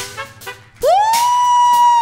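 Live funk band music: the band stops on a final hit that rings away. Then a single instrument plays one long note that slides up about an octave, holds steady, and begins to slide down at the end.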